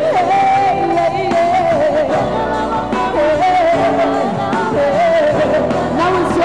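Live band playing pop music with a woman singing lead into a microphone, over electric guitar, drums and keyboard; the melody moves through held notes with a wavering pitch.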